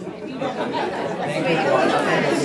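Audience chatter: many people talking at once in a large room, growing louder through the two seconds.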